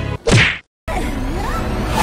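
A short whack-and-whoosh sound effect about a quarter of a second in, cut off by a moment of dead silence, after which music starts with gliding tones.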